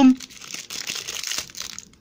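Foil trading-card packets crinkling and crackling in the hands as one packet is pulled free from a tightly glued bundle.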